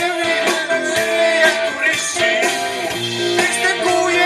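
Live rock band playing a song, with electric guitar, bass guitar, keyboard and drums, while a man sings.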